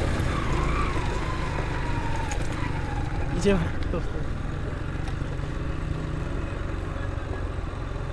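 Motorcycle engine running at idle: a steady low rumble, with a short louder sound about three and a half seconds in.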